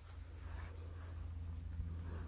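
A cricket chirping: a faint, high, pulsing note repeating about ten times a second, over a low steady hum.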